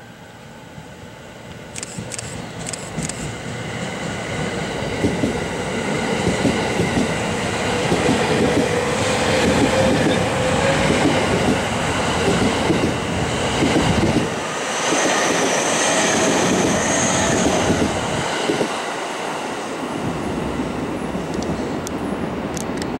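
A JR East E231-series electric train departing and passing close by, getting louder over the first several seconds. It has a steady whine from the traction motors and inverters, and the wheels clack rhythmically over the rail joints as the cars go by.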